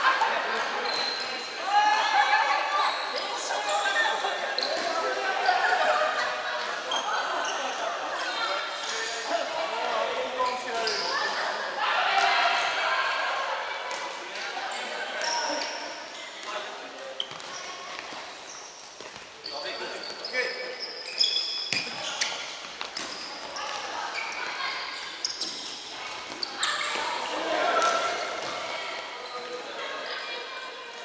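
Futsal play in a large, echoing sports hall: players' voices calling out, sharp ball kicks and bounces, and short high squeaks of shoes on the wooden floor.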